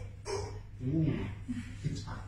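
A person's short, sharp breath, then a few brief voiced sounds with bending pitch, like groans or murmurs.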